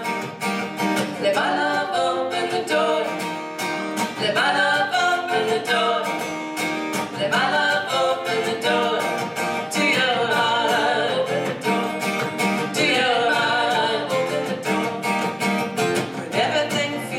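Steel-string acoustic guitar strummed steadily with a woman singing over it, a live folk-style song.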